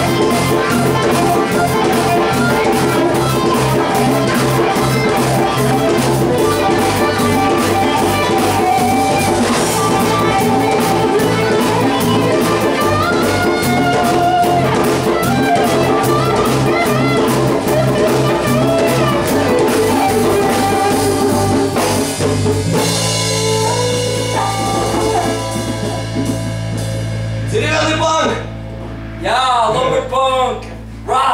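A live folk-rock band plays a jam on drum kit, acoustic and electric guitars and bass guitar, with a steady drumbeat. About two-thirds of the way through, the drums stop and a held chord rings on, with a few bent notes near the end.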